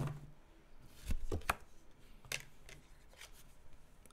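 Tarot cards being shuffled and handled by hand: a few scattered soft flicks and taps of card on card.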